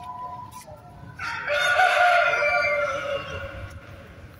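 A rooster crowing once: a single loud crow of about two seconds, starting a little over a second in.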